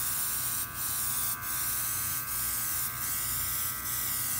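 Viper Pro-X cordless internal-mix airbrush spraying paint: its built-in compressor motor whines steadily under a hiss of air. The hiss dips briefly about every three-quarters of a second.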